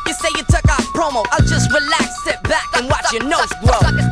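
Hip hop track playing loudly, with heavy bass-drum hits about once a second under rapped vocals.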